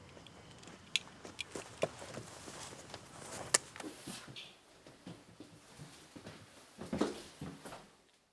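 Faint footsteps and clothing rustle in a small room, with scattered light clicks and knocks and one sharp click about three and a half seconds in.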